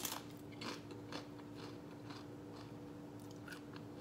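A person chewing a mouthful of food, with a sharp click as the bite is taken and then soft, irregular crunches and mouth sounds.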